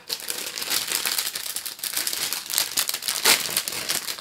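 Thin clear plastic bags holding model-kit parts crinkling as they are handled, a dense run of crackles.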